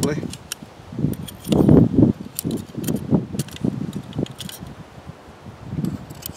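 Light metallic clicks and rattles of a Firebox Nano folding stove's thin metal panels and pins being fitted together by hand, with a louder low rumble about a second and a half in.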